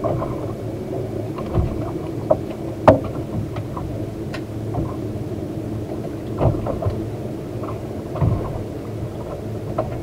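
Steady low rumble of wind and water on a small open boat, with scattered light clicks and knocks from fishing rods and reels. One sharper knock comes about three seconds in.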